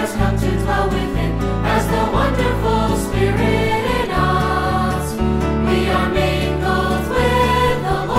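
A choir singing a Christian hymn over instrumental accompaniment with sustained bass notes, on the line 'has come to dwell within, as the wonderful Spirit in us'.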